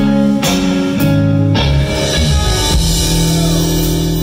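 Live band music: electric guitars playing over a drum kit, with held notes and chords.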